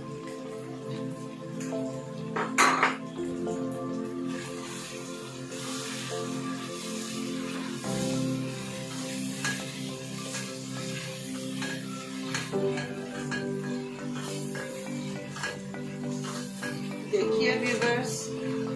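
Background music over a spatula stirring a thick chicken curry in a nonstick wok, with repeated scrapes and taps against the pan. A single sharp knock comes about two and a half seconds in.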